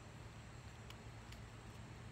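Faint soft taps of juggling balls landing in the hands, about three in quick succession, over a low steady hum.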